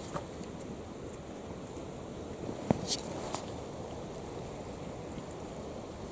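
Steady low rumble of wind on the microphone outdoors, with one faint click about two and a half seconds in and a brief hiss just after.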